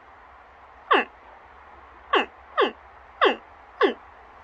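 A woman imitating a baby alligator's distress call to its mother, a cry like a bird chirp mixed with a frog croak: five short chirps, each sliding quickly down in pitch, spaced about half a second to a second apart.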